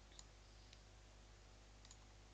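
Near silence: room tone with a faint low hum and a couple of faint computer mouse clicks, one just after the start and one near the end.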